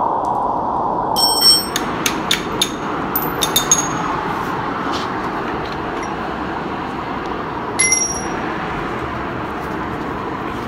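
Metal tools and parts clinking during brake work: a quick run of clicks with short ringing tones about a second in, a few scattered clicks after it, and one more brief ring near the end, over a steady background hiss.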